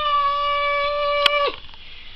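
A child's long, drawn-out cheer of "yay", held on one high pitch for about a second and a half and then dropping away.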